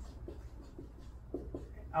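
Dry-erase marker writing on a whiteboard: a few short, quiet scratching strokes as letters are drawn.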